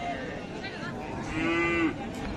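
Cattle mooing: one short, steady call about a second and a half in, over the background noise of a busy livestock market.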